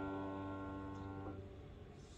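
Upright piano chord ringing out and fading, then damped about 1.3 seconds in, leaving only a faint dying ring.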